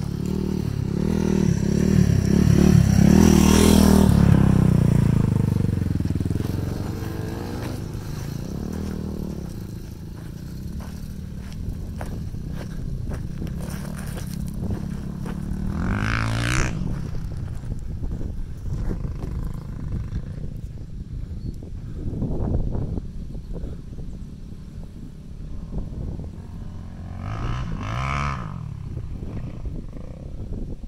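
Dirt bike engines revving as riders go past, loudest a few seconds in as one runs close by, with further revs about halfway through and near the end.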